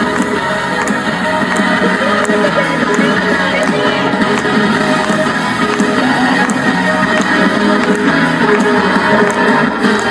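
Instrumental break of a pop-rock backing track played through a portable street speaker, with a steady beat and no vocal line.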